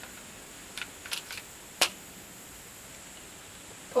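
Small clicks and clacks of a pistol being handled during a reload as the magazine goes in, with one sharper click a little under two seconds in.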